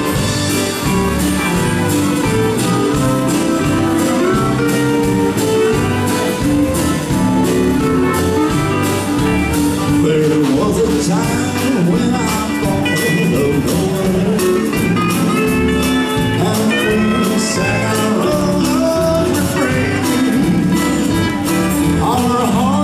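Live country band playing a dance tune: guitars over a drum kit keeping a steady beat.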